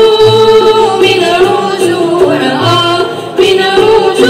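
An Arabic music ensemble of ouds and violins playing a melody with voices singing along, over a low beat that recurs about once a second.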